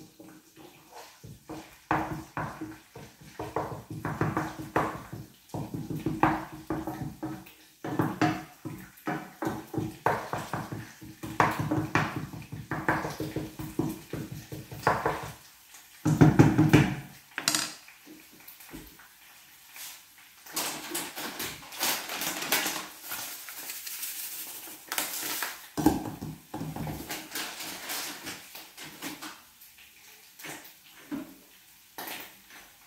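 Wooden spoon stirring and scraping in a frying pan of sesame seeds frying in oil, with many quick knocks against the pan. There is a heavier clunk about halfway through, then a stretch of hissing in the second half.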